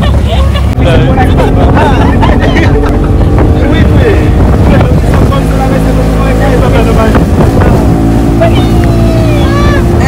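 Speedboat running at speed, loud, with wind buffeting the microphone.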